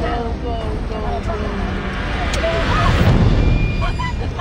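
Heavy rushing floodwater and spray from a waterfall beating on a moving car, with a deep rumble throughout and a louder surge of water noise about two and a half seconds in. Voices of the car's occupants are heard over it.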